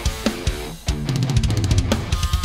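Progressive metal instrumental of an electronic drum kit (Roland V-Drums) playing with electric guitar. There is a brief break just before the middle, then a fast, even run of bass drum hits under a low held guitar note.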